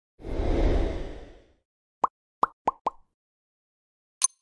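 Animated-logo sound effects: a low whoosh that swells and fades over about a second, then four short pops in quick succession about two seconds in.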